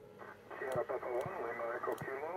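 An amateur radio operator's voice heard through the transceiver's speaker, relayed by the ISS onboard FM repeater. The audio is narrow and thin, with nothing above about 2 kHz, and the speech begins a moment after a click.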